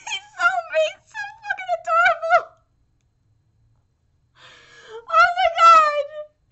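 A woman's high-pitched, wavering squeals of delight, a string of short ones for about two and a half seconds, then a pause of about two seconds, then more squealing near the end.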